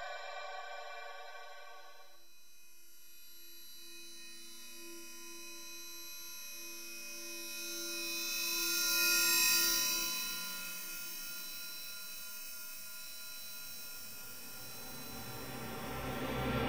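Electroacoustic music: layers of steady, high electronic tones, with a pulsing mid tone entering about two seconds in. A bright high wash swells to a peak in the middle and fades, and low sounds build near the end.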